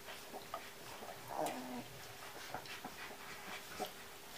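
Siberian husky mother and nursing puppies in straw: one short whimper about a second and a half in, among small clicks and rustles of licking and nursing.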